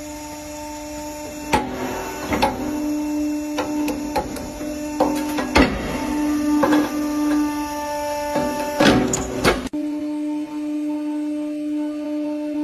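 Hydraulic press crushing metal objects, a brass padlock among them: a run of sharp cracks and snaps that starts about a second and a half in, grows loudest in the second half and cuts off abruptly near the ten-second mark. Background music with a held low tone plays throughout.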